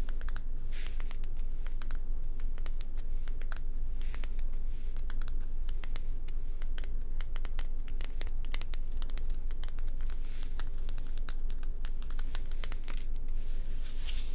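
Long fingernails tapping and scratching on a bumpy rock held close to the microphone: a quick, irregular run of small sharp clicks and scrapes, over a steady low hum.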